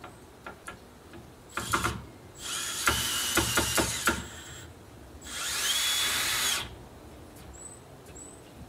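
Cordless drill-driver driving screws into a timber support. It runs twice: first for about two seconds with sharp clicks through the run, then for about a second and a half, speeding up to a steady whine.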